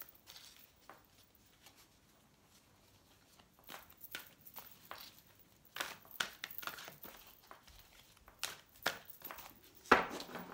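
A deck of oversized cards shuffled by hand: irregular soft slaps and rustles of the cards against each other, starting a few seconds in after a near-quiet opening.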